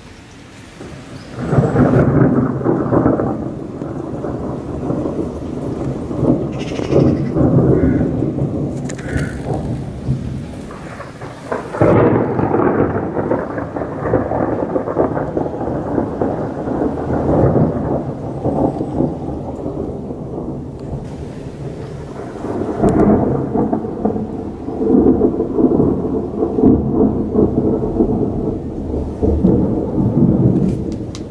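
Thunder rolling overhead in three long swells, one starting about a second and a half in, one near the middle and one about three quarters through, with rain falling throughout.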